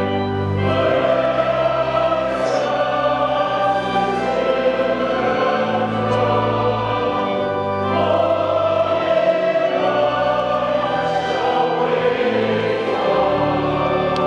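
Church choir singing slow, held chords that change about every two seconds.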